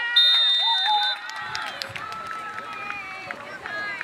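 Voices calling out across an outdoor soccer field, with one loud, steady high-pitched tone about a second long near the start.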